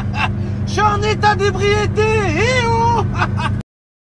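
A man's voice making long, wavering wordless wails over the steady low drone of a car engine in the cabin. The sound cuts off abruptly near the end.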